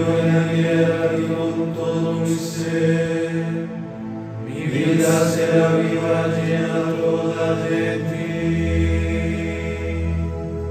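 Men's voices chanting together in unison, a slow sustained melodic line in two long phrases, the second starting about four and a half seconds in.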